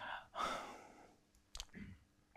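A man's soft breaths and a sigh between phrases, with a single short click about one and a half seconds in.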